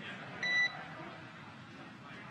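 A single short beep on the mission radio loop about half a second in: one steady tone lasting about a quarter second, the tone that brackets a transmission on the loop. After it there is only faint hiss from the feed.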